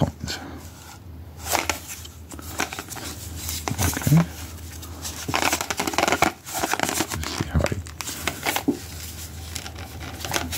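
Corrugated cardboard handled and picked at with cotton-gloved fingers: scratchy rustling and scraping with short tearing sounds, busiest in the second half.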